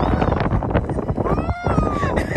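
A single high-pitched squealing cry about a second in, rising and then sinking, over a steady rumble of wind buffeting the microphone.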